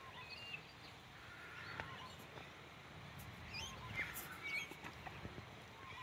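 Faint outdoor ambience with scattered short bird chirps and a low, uneven rumble.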